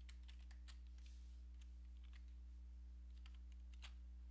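Faint typing on a computer keyboard: irregular key clicks as a username is entered into a code editor, over a steady low electrical hum.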